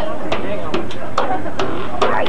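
Indistinct voices talking, with a few short sharp clicks scattered through.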